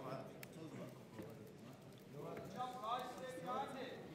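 Voices calling out from the crowd and the corners in a boxing hall, louder in the second half, with a few knocks of boxers' feet on the ring canvas as the bout gets under way.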